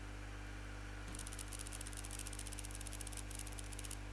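A steady low electrical hum, joined about a second in by a rapid, faint, high-pitched crackle of fine ticks.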